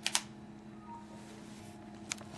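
A single short click right at the start, then quiet room tone with a steady low hum.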